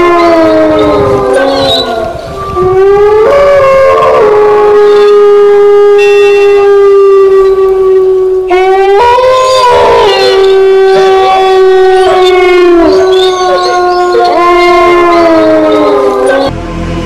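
Loud horn-like blasts at one steady pitch, each sliding up at its start and dipping at its end; three follow one another, the longest held about five seconds.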